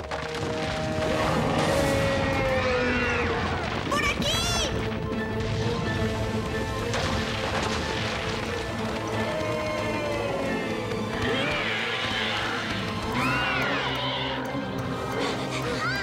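Cartoon soundtrack: background music under the wordless cries of cartoon characters, which rise and fall in pitch, several times.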